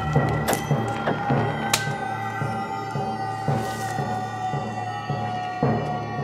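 Horror film score: a sustained high note and layered drones over a steady low percussive pulse of about two beats a second, with a few sharp struck hits in the first two seconds.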